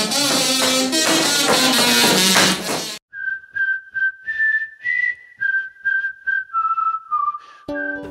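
Busy background music that cuts off suddenly about three seconds in, followed by a lone whistled tune of short, separate notes; the full music comes back in under the whistling near the end.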